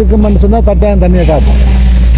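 A person's voice talking, over a steady low rumble.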